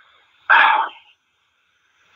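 A single short, explosive burst of breath from a person, about half a second in, like a sneeze.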